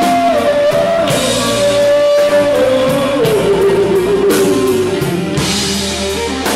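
Live blues-rock band playing: electric guitars and a drum kit, with a long held melody line that steps down in pitch over the first few seconds.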